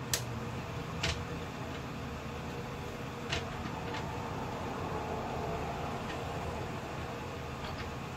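Steady hum of an electric fan, with four short sharp clicks, twice in the first second and twice more around three to four seconds in, as a CHI Lava flat iron and a hairbrush are worked through the hair.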